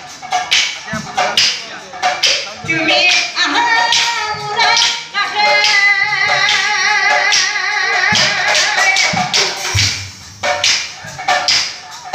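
Nagara Naam devotional folk singing: a woman's voice holds a long, wavering sung line through the middle, with quick drum and clap beats, about three or four a second, before it and again near the end.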